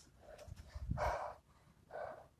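A man breathing hard from push-ups: one strong puff of breath about a second in, with fainter breaths just before and near the end.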